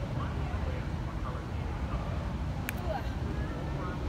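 A single sharp click of a putter striking a miniature-golf ball, about two-thirds of the way in, over a steady low background rumble and faint distant voices.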